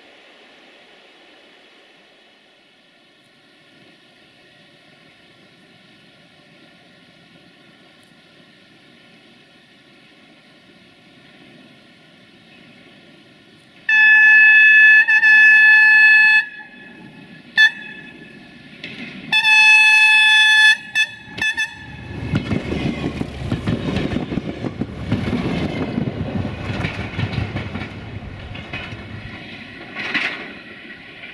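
A diesel multiple unit sounds its horn as it approaches: one long blast, a brief toot, a second blast and two short toots. It then passes close by, its diesel engine and its wheels on the rails rumbling loudly, after a faint distant hum in the first half.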